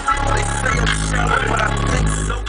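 Music played loud through the car's JBL P1224 subwoofers, heard inside the cabin, with deep bass notes that change every half-second or so.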